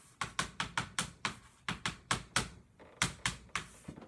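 Chalk writing on a chalkboard: an uneven run of sharp taps and short scratches, about four a second, as each stroke of the symbols is made.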